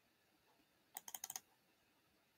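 A quick burst of about six computer keyboard keystrokes about a second in, against near silence.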